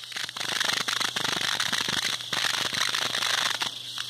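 Dense, irregular crackling and rustling, made of many small clicks close together. It sets in just after the start, drops away briefly about two seconds in, and eases off near the end.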